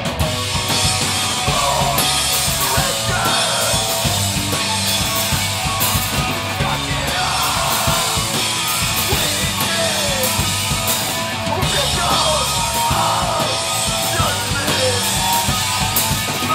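Live hardcore punk band playing loud and fast: pounding drum kit, distorted guitars and bass, with shouted vocals coming and going.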